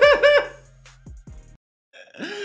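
A man's short burst of high-pitched laughter, four quick "ha" pulses at the very start, then a faint low hum that cuts off to silence near the end.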